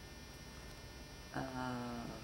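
Steady electrical mains hum under a pause in speech, then a man's drawn-out "uh" starting about a second and a half in.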